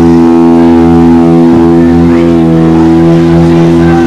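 A punk band's electric guitar holding one loud, steady distorted chord, ringing unchanged throughout.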